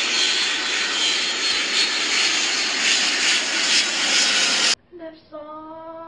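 Loud, steady airplane engine noise laid in as a sound effect, cutting off suddenly about five seconds in.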